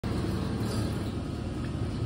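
Steady low rumble of background machine noise with a faint hum, unchanging throughout.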